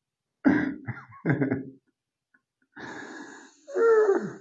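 A man laughing in three short bursts, then a quieter breathy stretch and another burst of laughter near the end.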